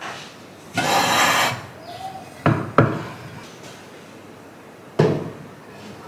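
Decor pieces being handled and set down on a wooden shelf: a short burst of rustling about a second in, then two quick knocks close together and a third knock near the end.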